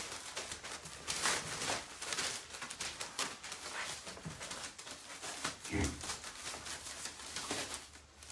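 A litter of young puppies scuffling about, with many small clicks and scratches and a few faint puppy sounds. There is a soft thump about three-quarters of the way through.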